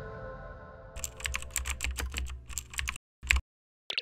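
Computer keyboard typing sound effect: a quick run of key clicks for about two seconds, then a pause and two single clicks near the end, as background music fades out at the start.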